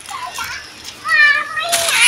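Young child's high-pitched voice: a drawn-out squeal or call about a second in, then a louder shout near the end.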